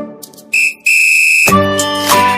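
A high, steady whistle: a short toot about half a second in, then a longer held note lasting about two-thirds of a second.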